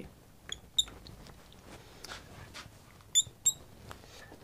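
Marker squeaking on a glass lightboard: four short, high chirps in two pairs, about a third of a second apart within each pair, the second pair near the end as an equals sign is drawn.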